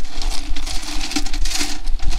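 A hand stirring through a steel pail full of small rocks, the stones clattering and clicking rapidly against each other and the metal sides.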